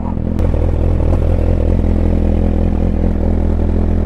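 2017 Suzuki GSX-R1000's inline-four engine idling steadily, with a single sharp click about half a second in.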